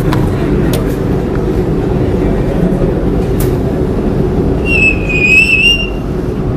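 Chalk drawing a line on a blackboard, with a high wavering chalk squeak lasting about a second near the end, over a steady low room rumble.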